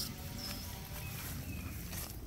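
Outdoor ambience: a steady low rumble with a few short, faint bird chirps, one about half a second in.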